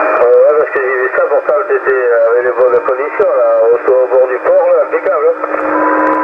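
Another operator's voice received over upper sideband on CB channel 27 (27.275 MHz), played through the Yaesu FT-450 transceiver's speaker: thin, narrow-band speech over steady hiss.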